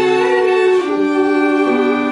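Violins with clarinet and piano playing a slow carol melody in held notes, the harmony shifting about twice.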